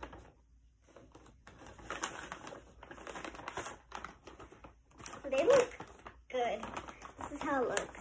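Crinkling and rustling of a foil chip bag as a hand rummages inside it for a chip, followed by voices in the second half.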